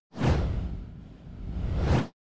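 Whoosh transition sound effect: a swish of noise that fades down, swells back up and then cuts off sharply.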